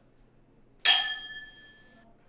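Two stemmed wine glasses clinking once in a toast about a second in, a single bright chink that rings on with a clear tone fading over about a second.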